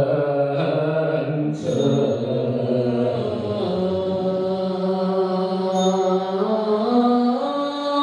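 A congregation chanting a Chinese Buddhist mantra in unison, in slow, long-held notes that step up and down in pitch.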